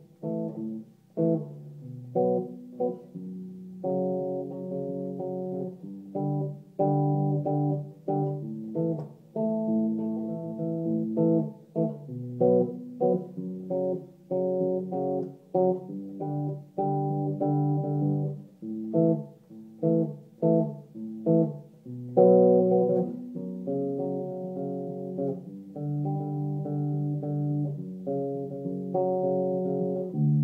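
Electric bass guitar plucked with the fingers, playing a slow riff of single notes, some held and some short and choppy.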